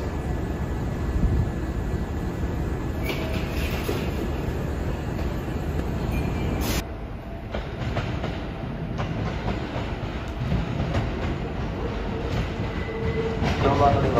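Kintetsu electric train running on the rails as it approaches the platform: a steady low rumble with some clatter of wheels over the track. The sound drops abruptly and changes about seven seconds in.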